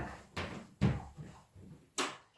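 Two footsteps on a hard floor, then a wall light switch clicking at the end, at which the faint high-pitched whine of overhead fluorescent tubes cuts out.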